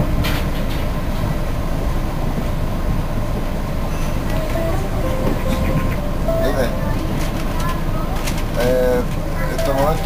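Commuter train running along the line: a steady low rumble of wheels on rail heard from on board, with a few sharp clicks at the very start.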